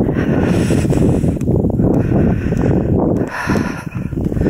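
Wind buffeting the camera microphone: a loud low rumble that swells and dips in gusts.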